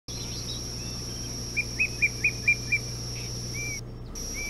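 A bird calling in a quick series of six short whistled notes, about four a second, over a steady high-pitched whine and a low hum. The sound cuts out briefly near the end.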